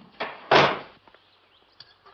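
A short knock followed by a louder thud about half a second in that dies away quickly.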